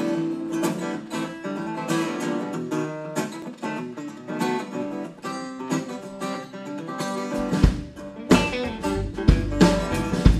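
Live band intro to an Americana song: an acoustic guitar is strummed and picked on its own, then bass and drums come in about three-quarters of the way through.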